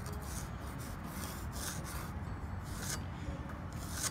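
Pencil scratching a line along the edge of a speed square onto a two-by-six board, in several short strokes.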